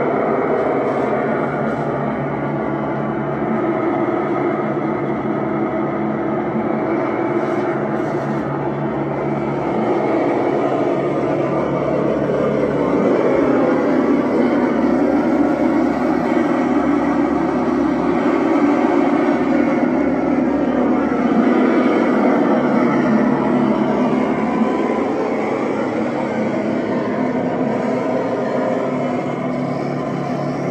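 Experimental electronic noise drone played live on a small knob-covered electronic box and a chain of effects pedals through an amplifier: a dense, unbroken droning wash with slowly sweeping pitches, growing louder from about midway and easing off again near the end.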